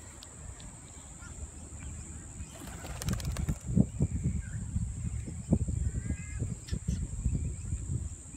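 A bird gives a short call about six seconds in, over a steady high hiss. From about halfway through there is low rumbling with several sharp thumps, which are the loudest sounds.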